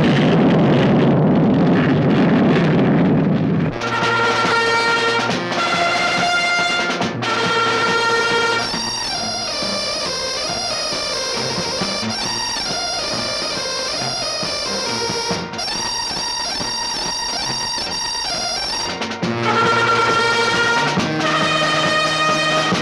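Loud jet engine roar of a Concorde taking off, cutting off about four seconds in, followed by brass-led music.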